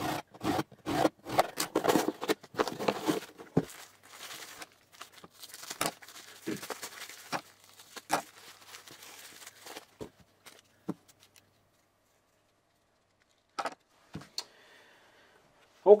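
A cardboard shipping box being ripped open: a quick run of tearing noises from tape and flaps in the first few seconds, then rustling of the packing material as the contents are pulled out. A couple of short knocks come near the end.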